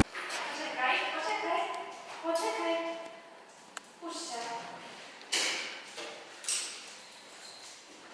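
An indistinct, high-pitched voice speaking in short phrases, with a few short knocks in between.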